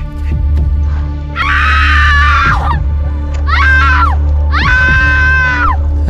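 A person screaming three times over background music with a steady low drone: a long scream about a second and a half in, a shorter one near four seconds, and another long one that ends just before the voice-over begins. Each scream drops in pitch as it ends.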